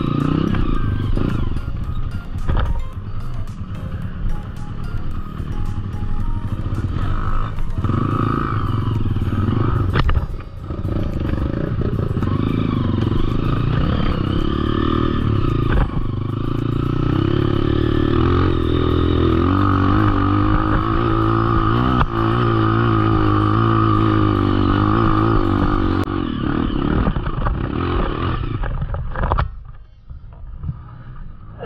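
Off-road dirt bike engine running hard up a steep dirt trail, its revs rising and falling with the throttle and terrain. The engine sound falls away abruptly near the end as the bike tips over.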